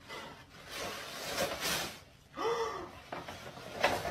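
A person gasping: a breathy, drawn-out intake of about two seconds, then a short voiced 'oh' about two and a half seconds in.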